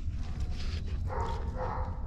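A dog whining in three short pitched calls, starting about a second in, over a steady low rumble.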